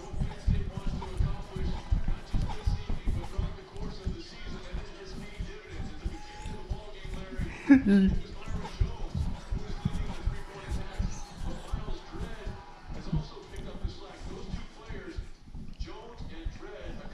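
Television sports broadcast playing across the room, commentary with music under it, alongside dense, irregular low thumping close to the microphone. A brief louder vocal sound comes about eight seconds in.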